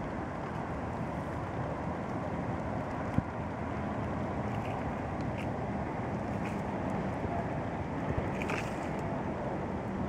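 Steady wind rushing over the microphone, with a couple of brief faint clicks.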